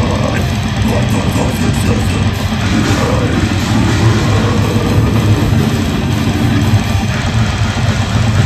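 Death metal band playing live: heavily distorted electric guitars, bass and drums in a loud, dense wall of sound.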